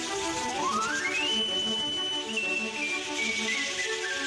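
Documentary background music: soft repeating chords under a whistle-like lead tone that climbs in steps during the first second, holds high, then steps slowly back down.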